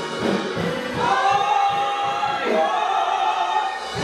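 Gospel singing: several voices holding long notes over drawbar organ accompaniment. The low bass part drops out about two-thirds of the way through.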